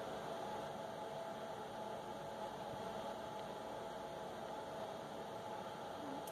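Faint, steady hum and hiss of room tone, with no distinct sounds.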